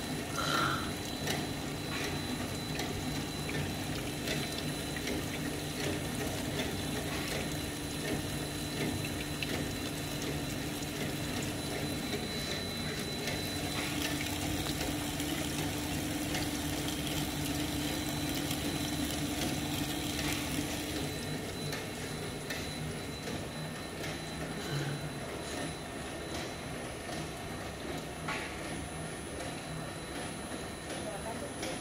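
Tapioca pearl-making machine running with a steady motor hum and frequent light mechanical clicks, while water pours from its cutter outlet and splashes into a steel tank. About two-thirds of the way through the hum's higher tone drops away and the sound eases slightly.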